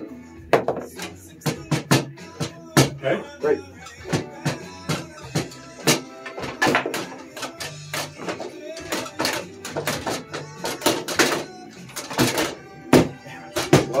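Foosball played on a Bonzini table: quick, irregular sharp knocks and clacks as the ball is struck by the rod men and rebounds off the table, with music playing in the background.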